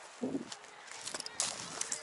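Footsteps crunching over coarse beach pebbles, with irregular clicks of stones knocking together underfoot.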